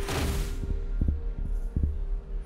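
Tense drama soundtrack: a whoosh sweep at the start over a held low note, then deep thuds about a second in and again near the end.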